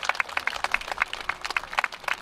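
Audience applauding: an irregular patter of hand claps.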